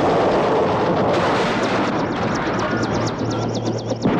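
Film soundtrack of a loud, unbroken barrage of gunfire, with a high wavering whine coming in about two seconds in.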